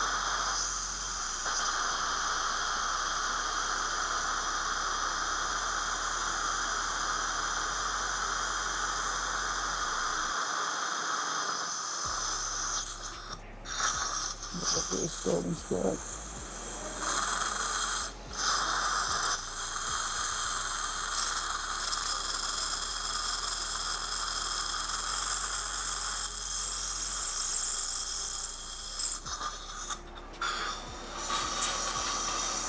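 A dental drill (handpiece) running with a steady high-pitched whine over the hiss of a suction tip, stopping briefly a few times about halfway through and then running on.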